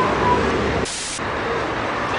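Steady hiss of an outdoor recording, with a brief burst of brighter, sharper hiss about a second in.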